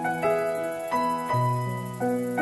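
Slow piano music: notes and chords struck every half second or so and left to ring, with a low bass note coming in just past the middle.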